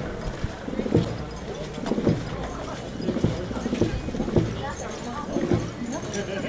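Indistinct chatter of a group of men talking outdoors, with irregular dull knocks about once a second.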